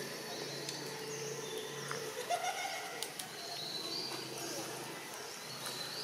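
Birds chirping and calling, with one short rising cooing call a little over two seconds in, over a steady low hum.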